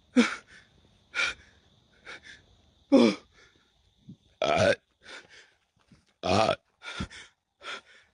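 A man's short, loud gasping breaths, about one a second, some voiced and falling in pitch.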